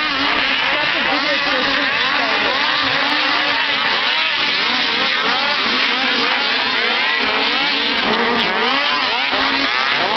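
A pack of snocross racing snowmobiles with two-stroke engines, several revving at once, their pitches rising and falling continually over one another as they race.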